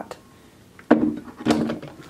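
Stainless steel electric kettle set back down onto its base: a sudden clunk about a second in, with a short ring, and a second knock about half a second later as it seats.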